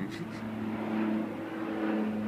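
An engine hums steadily at one low pitch.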